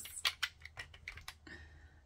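Plastic lip gloss tubes clicking and knocking together as they are handled, a quick run of light clicks over the first second and a half.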